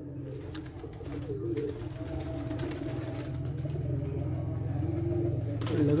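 Domestic pigeons cooing, low wavering calls overlapping one another over a steady low hum.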